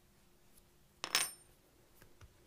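A single short metallic clink about a second in, a small metal object knocking on the wooden worktable and ringing briefly.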